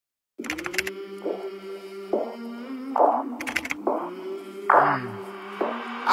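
Background song opening: a held low note with regular short accents and a few clicks, and a single sung word about halfway through.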